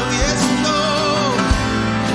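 A live worship band playing: acoustic guitar, bass and drums under a voice singing the melody, with kick-drum hits twice.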